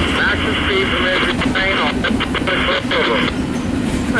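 Double-stack intermodal train rolling past, a steady rumble of the well cars on the rails, under a scanner radio's static and garbled voice transmission that cuts off about three seconds in.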